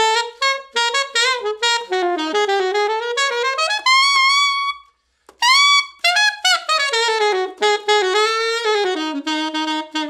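Trevor James Horn 88 alto saxophone with a bright Claude Lakey mouthpiece, played solo: a pop phrase of quick runs of short notes, a brief break about five seconds in, then a long held note near the end.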